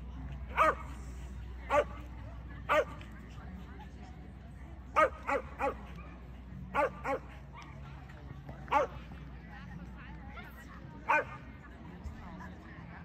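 A dog giving short, high yips, about ten in all: some single, some in quick runs of two or three.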